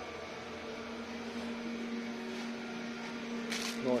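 A steady low hum over faint room noise, with a short hissing rustle about three and a half seconds in.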